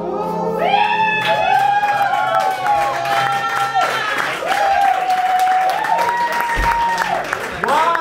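A club audience whooping and cheering in long overlapping calls that rise and fall, with clapping underneath, as the recorded song's last chord fades away in the first second.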